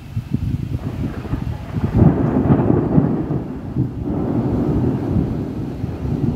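Thunder rumbling from an approaching storm, a low rolling rumble that swells about two seconds in and then eases off.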